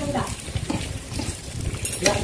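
Food frying in a pan with a steady sizzle, stirred with a utensil that scrapes and knocks against the pan.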